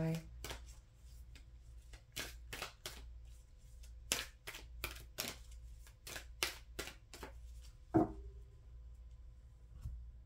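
A tarot deck being shuffled by hand: a run of crisp card snaps a few times a second, then one louder knock about eight seconds in.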